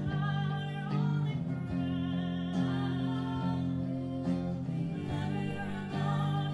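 Live acoustic song: several women's voices singing together, holding long notes over an acoustic guitar.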